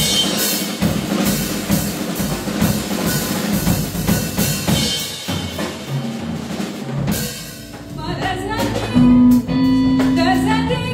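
Live band playing with a busy drum kit pattern of bass drum, snare and rimshots for about seven seconds. The drums then drop back, and a sung vocal line with a held bass note comes in near the end.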